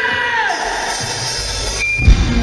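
Live rock band playing loud on stage: a held note slides down in pitch about half a second in, then deep bass notes come in about a second in as the band starts into a song.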